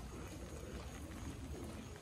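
Faint, steady outdoor hiss with light rain falling; no distinct event stands out.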